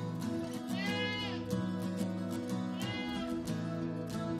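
Background music with steady held notes, and an animal bleating twice, once about a second in and again near three seconds, each call rising and falling.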